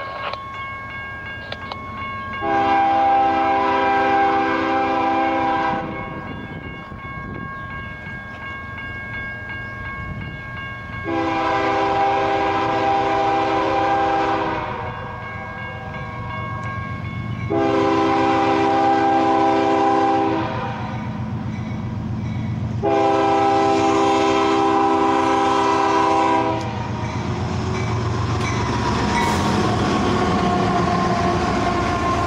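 CSX diesel locomotive's multi-chime air horn sounding four long blasts as the train approaches, over the steady rumble of the diesel engine. Near the end the locomotive passes close and the rumble and wheel-on-rail noise grow louder.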